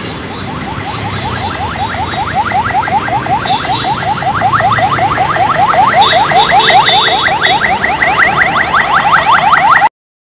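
Electronic alarm sounding as a fast run of rising chirps, about seven a second, growing steadily louder before cutting off abruptly near the end, over street traffic noise.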